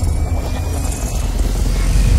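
Cinematic intro sound effect: a deep, steady rumble with a faint tone slowly rising above it.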